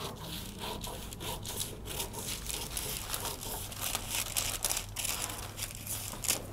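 Scissors cutting through thin tissue paper, the paper crinkling and rustling as it is held and fed: an irregular run of snips and crackles.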